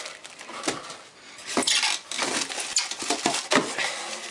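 Cardboard box and plastic-bagged cables being handled: irregular rustling with a few light knocks as packing is moved around.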